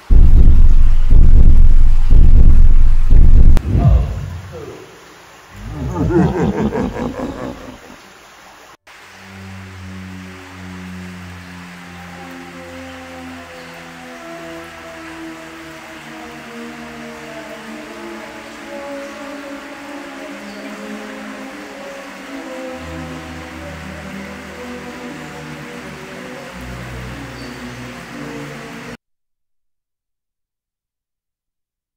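Two loud roars: the first long and low, lasting about four seconds; the second rising in pitch, about six to eight seconds in. From about nine seconds, slow music of long held notes plays, stopping just before the end.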